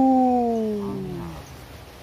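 A man's long drawn-out 'ooh', held on one pitch like a howl, slowly sinking and fading away about a second and a half in.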